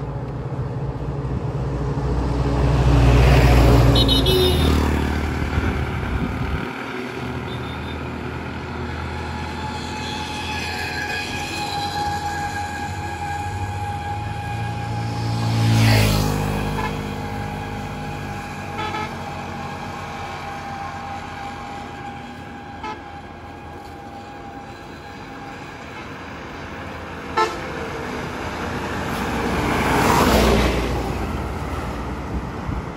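Motor traffic passing close on a two-lane road, with horns sounding: one vehicle goes by about three seconds in with a short horn toot, another passes around the middle, and a truck comes up near the end.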